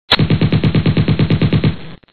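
Machine-gun fire sound effect: a loud, rapid, even burst of about ten shots a second that stops abruptly near the end.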